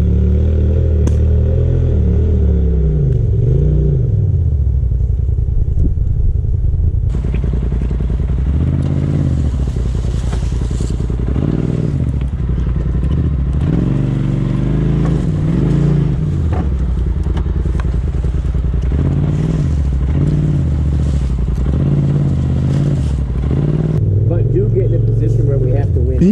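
A side-by-side UTV engine. It runs at a steady low idle for the first several seconds, then revs up and down over and over with rattling as the machine crawls over rocks and logs. About two seconds before the end it settles back to a steady idle.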